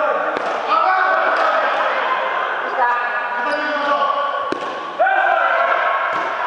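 Voices echoing in a large wood-floored sports hall, with a few sharp knocks or thuds a second or so apart.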